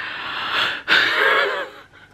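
A woman letting out two long, breathy gasps of excitement, each close to a second long, the second louder.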